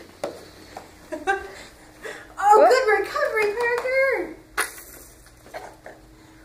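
A toddler babbling in a run of high, gliding wordless vocal sounds for about two seconds in the middle, with shorter bits before it, and a single sharp knock shortly after.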